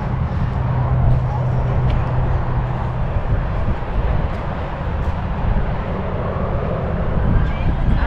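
Steady outdoor rumble of wind and distant traffic. Near the end a jet airliner coming in to land becomes audible as a faint rising whine.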